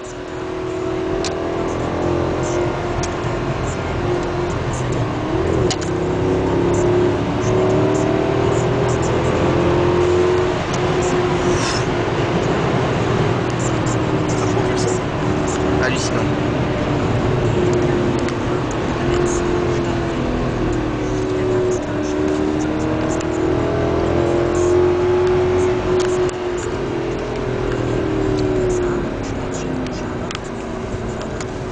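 Mercedes CLS 63 AMG's V8 engine heard from inside the cabin, driven hard on a race track: the engine note builds over the first several seconds, then holds high and steady, wavering slightly with throttle changes, over tyre and road noise.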